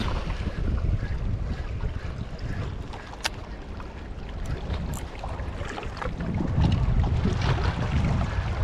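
Wind buffeting the microphone as a low rumble that grows stronger near the end, over sea water lapping at shore rocks. A few sharp clicks come through it, the clearest about three seconds in.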